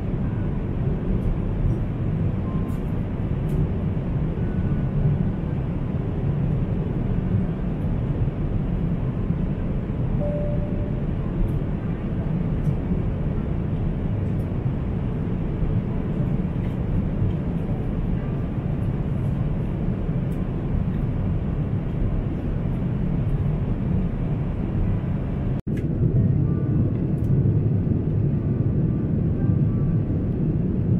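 Steady airliner cabin noise: an even, low roar of engines and airflow heard from inside the passenger cabin. Near the end there is a sudden break, after which the roar is a little louder.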